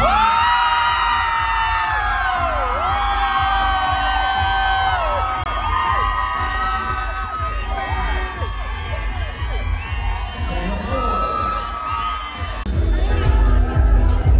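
A crowd of supporters suddenly erupts in loud screaming and cheering, many high voices holding long shrieks at first. After about five seconds these break into shorter whoops and yells, which die down near the end as music from the venue comes back.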